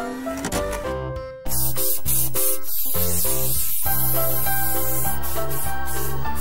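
Cheerful children's background music. About a second and a half in, a loud hissing spray-paint sound effect joins it and carries on steadily as a paint sprayer colours a lorry.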